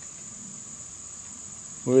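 Insects chirping in a steady, unbroken high-pitched trill.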